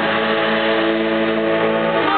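Student concert band, brass and woodwinds, holding one sustained chord, with the harmony changing at the start and moving on again right at the end.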